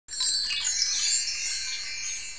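A high-pitched shimmering chime sound effect, like a sparkle twinkle, that starts suddenly and slowly fades.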